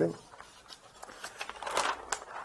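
Newspaper pages rustling and crinkling as they are handled and lifted, with a louder rustle near the end.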